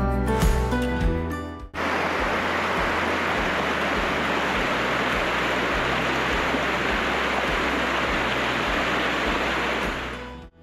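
Background music for the first couple of seconds, then a sudden cut to the steady rushing of a small creek tumbling over rocks.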